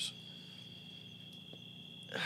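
Crickets trilling: a faint, steady high-pitched chorus, heard during a lull in the talk.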